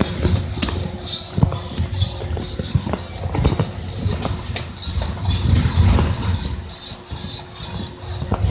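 Rubbing, rustling and knocking of a phone's microphone being jostled against clothing and bodies, uneven, with many short knocks.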